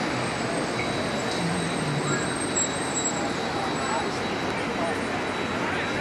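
Steady outdoor city ambience: a constant hum of road traffic with faint chatter of distant voices.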